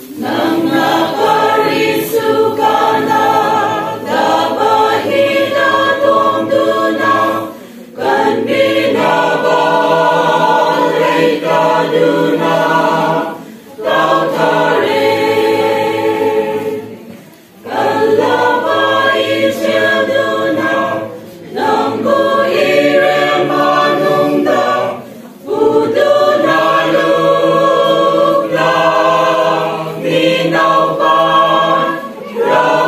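Choir of mixed voices singing a Christian hymn without accompaniment, in phrases separated by brief breaths.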